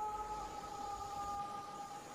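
Faint background music: a steady, sustained drone of a few held tones over a soft hiss.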